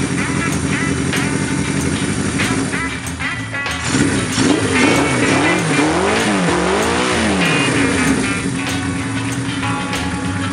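Suzuki GS750's air-cooled inline-four running through a four-into-one exhaust: idling steadily, then revved up and down in several quick throttle blips from about four seconds in, settling back to idle near the end.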